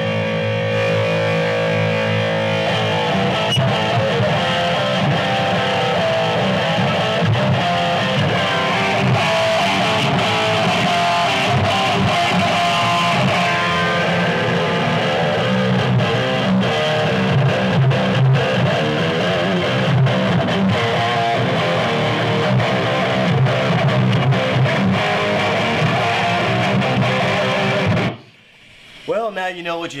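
Electric guitar played through a Laney valve amp head switched to 1 watt, heavy rhythm riffs and chords at full volume. The playing stops suddenly near the end.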